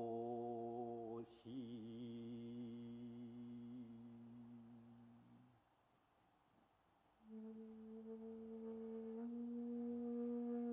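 Soft ambient background music of long held tones: one sustained note fades away by about halfway, a short near-silence follows, then a new held tone begins and shifts to another pitch near the end.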